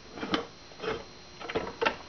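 Metal parts of a mechanical parking meter clicking and knocking as they are handled and fitted together. There are about five short clicks, the loudest near the end.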